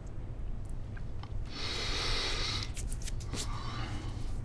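A man's long, heavy breath out, a sigh lasting about a second, starting about a second and a half in, over a low steady room hum.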